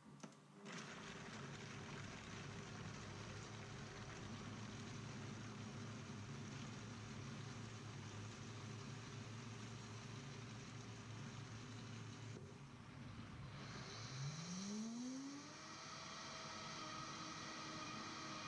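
High-powered countertop blender running, grinding soaked nuts and dates with water into a thick paste. It starts about a second in and runs steadily; past the middle it dips briefly, then its motor pitch rises and it runs on at a higher whine.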